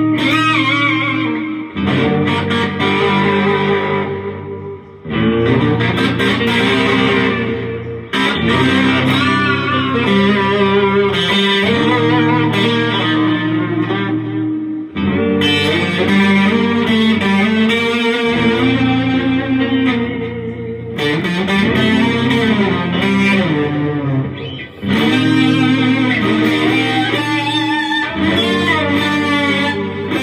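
Electric guitar, a Fender Stratocaster, playing a spaghetti-western-style jam: a looped low riff from an MXR Clone Looper pedal repeats underneath while live lead lines with string bends and vibrato play on top. The loops drop out briefly several times.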